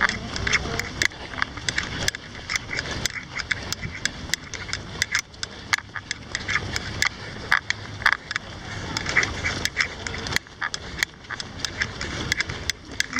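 Footfalls of a pack of runners on asphalt: quick, irregular shoe slaps several times a second over a low rumble.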